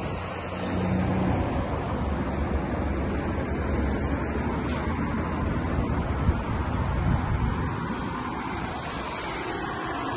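Road traffic on a wide multi-lane avenue: a steady rush of passing cars' tyres and engines.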